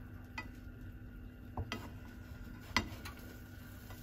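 A slotted turner clicking and scraping against a ceramic-coated frying pan as thick pancakes are flipped, with a few short knocks, the loudest a little under three seconds in, over a faint sizzle of frying.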